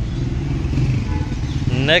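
Small Honda motorcycle's single-cylinder engine running at low revs, a steady low putter, as the bike rolls in. A man's voice starts near the end.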